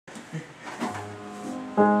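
Low voices in the room, then near the end a grand piano comes in abruptly and loudly with the opening chords of a rag.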